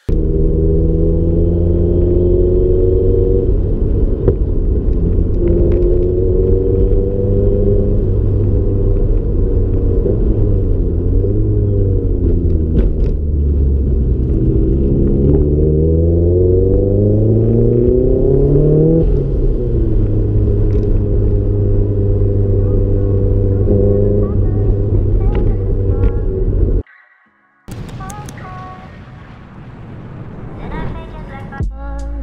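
Nissan S14 Silvia's turbocharged engine heard from inside the cabin, revving up in pitch and dropping back at each gear change as the car is driven hard. The sound cuts off suddenly near the end.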